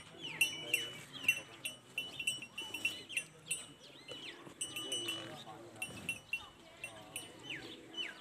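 Small birds chirping busily and rapidly: clusters of short, high notes and quick downward-sliding calls, repeated many times a second, over a faint murmur of background voices.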